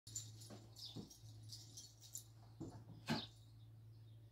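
Faint sounds of a small dog moving about on rugs, with scattered light scratchy rustles and a short, sharper sound about three seconds in, over a steady low hum.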